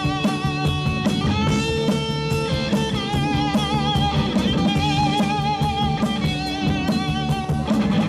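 Live rock band: a Stratocaster-style electric guitar plays long sustained lead notes with a wavering vibrato, over the rest of the band and a drum kit.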